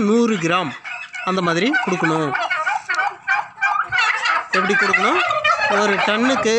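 A flock of domestic turkeys calling, with a fast rattling gobble from about two to four and a half seconds in.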